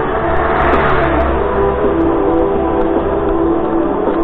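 A car passing close by on the road, its tyre and engine noise swelling about a second in and then fading, over background music.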